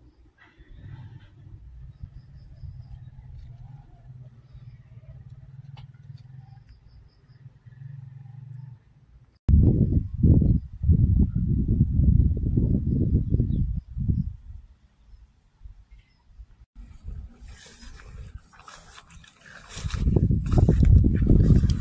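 Gusty wind buffeting the microphone as a rainstorm gathers: a low rumble in the first half, then loud, irregular gusts from about ten seconds in that ease off after a few seconds and pick up again near the end.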